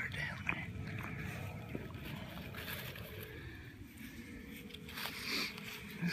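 Rustling and scraping of a hand working through wet mud and dead grass while digging a wapato tuber out by hand. Over it runs a low rumble of handling noise on the phone.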